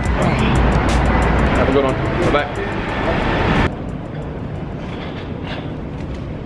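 Loud traffic and voice noise in an airport car drop-off garage, with indistinct voices. About two-thirds of the way in it gives way abruptly to a quieter, steady indoor hum.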